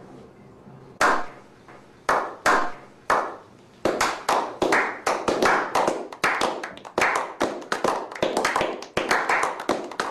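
A small group's slow hand clap: single claps about a second apart at first, quickening to several claps a second.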